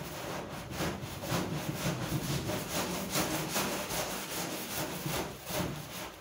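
Stiff stick broom scrubbing a wet metal door in a fast, even run of back-and-forth strokes.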